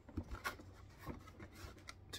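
Faint handling noise: soft rustles and a few light clicks, most of them in the first half-second.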